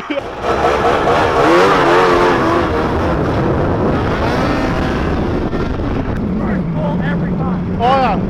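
Snowmobile engine revving hard with a wavering pitch as the sled spins around in deep snow. A steadier low engine note follows in the last couple of seconds.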